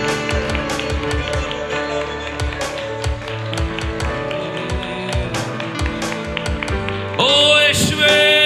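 Live worship band music with a steady drum beat and sustained keyboard-like chords. A lead singer's voice comes in loudly near the end.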